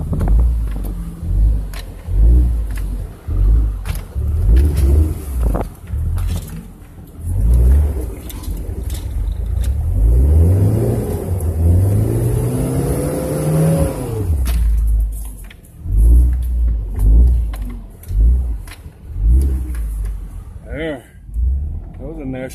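Pickup truck engine revving under load as it crawls up rock ledges, its pitch rising steadily for several seconds near the middle and then dropping off, with heavy low thumps and jolts of the cab as the truck bumps over the rocks.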